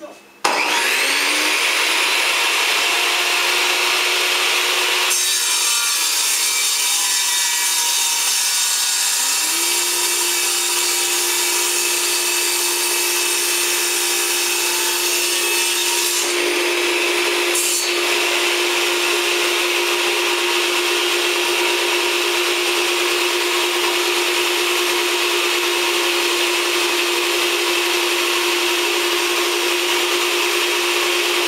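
Bosch portable table saw switched on and cutting a thick wooden board. The motor starts about half a second in, its pitch rising briefly as it comes up to speed, then runs with a steady whine under a loud, even cutting noise.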